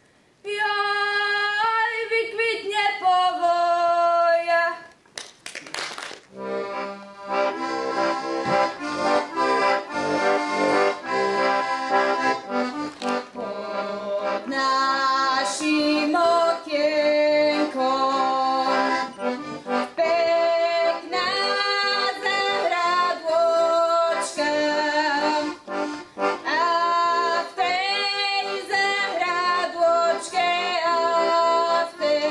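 A girl's unaccompanied folk song ends about five seconds in. After a short pause and a knock, a button accordion starts a lively folk tune, and a girl's voice sings along over it in the second half.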